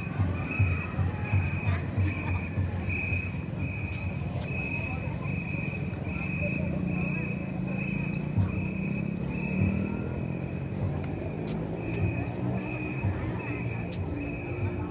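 Outdoor dusk background: a high, even chirp repeats steadily about every half-second over a low hum of motor traffic. The chirp is typical of an insect calling.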